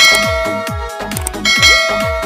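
A bell-chime sound effect rings twice, at the start and again about a second and a half in, each ring dying away slowly, over electronic music with a steady beat.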